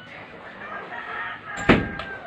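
A rooster crowing in the background, one long call, while a door is pulled shut with a loud bang near the end.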